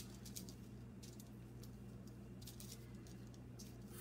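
Faint, scattered rustles of a cloth sock being handled and pressed down by hand on a table, over a steady low hum.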